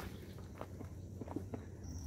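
Faint, scattered footsteps with a few small clicks over a low steady rumble.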